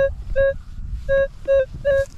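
Minelab E-TRAC metal detector sounding a target tone: five short mid-pitched beeps in pairs as the coil is swept back and forth over the spot. It is a repeatable signal reading 13-25, which the detectorist takes for probably a pull tab.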